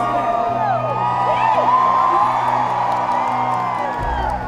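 Audience whooping and cheering over an acoustic string band (banjo, acoustic guitar, fiddle and cello) holding sustained notes between sung lines.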